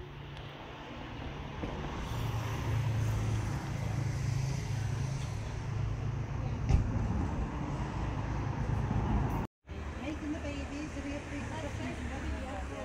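Street traffic: a motor vehicle's engine running close by, a low steady hum that grows louder about two seconds in, with one sharp knock a little past halfway. After a short break near the end, faint voices sound over the traffic.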